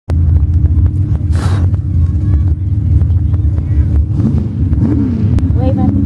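Pickup truck engine running loud and low at a mud-bog start line, rising and falling in pitch twice near the end as it is revved. A short hiss comes about a second and a half in.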